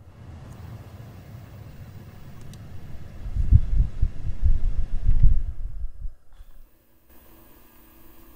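Low, uneven rumble of a 2015 Ram 1500's HVAC blower fan running on low behind the opened dashboard, loudest midway. Near the end it gives way to a faint steady hum of a small electric motor, a blend door actuator running.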